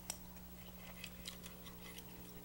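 Faint, scattered light clicks of knives and forks against plates as diners cut their food, over a low steady hum.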